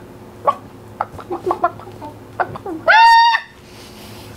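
A person imitating a hen: a run of short, uneven clucks, then a loud, high-pitched squawk lasting about half a second, just before three seconds in.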